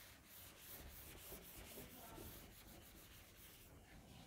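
Faint, quick back-and-forth strokes of a handheld eraser wiping a whiteboard, about four or five strokes a second, stopping shortly before the end.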